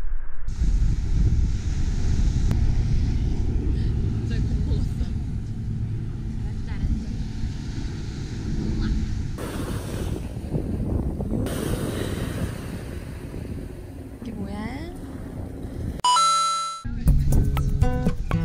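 Strong sea wind buffeting the microphone over breaking surf, a heavy low rumble. About sixteen seconds in, a short chime sounds, and background guitar music follows.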